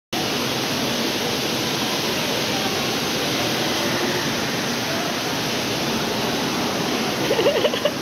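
Steady rushing background noise of a large tiled indoor space, with faint distant voices in it and a nearer voice starting near the end.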